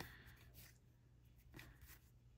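Near silence, with a few faint soft rustles of a stack of baseball trading cards being slid one off another in the hands.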